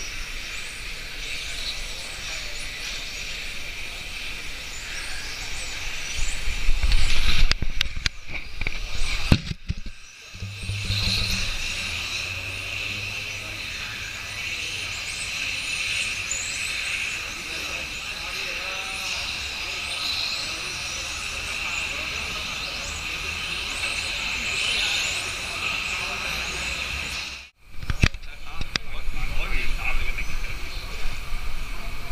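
Several electric 1/10-scale RC touring cars racing on an asphalt track, their motors whining with a pitch that keeps rising and falling as they speed up and brake. The sound breaks off sharply twice.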